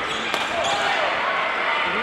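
Busy sports hall: many overlapping voices and calls from players on several badminton courts, with one sharp knock about a third of a second in.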